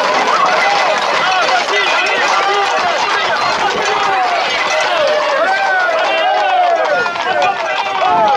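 A crowd of people shouting and calling over one another without a break, with running footsteps on the road.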